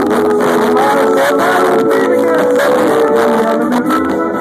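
Live rock band playing an instrumental passage on electric guitars and drums, loud and steady.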